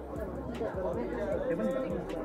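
Overlapping chatter of a group of people talking at once, with no one voice standing out, and a few short clicks.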